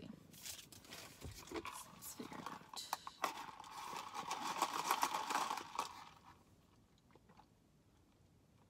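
Plastic iced-coffee cup, straw and ice being handled: a busy rustling and clattering that grows louder in the middle and stops about six seconds in.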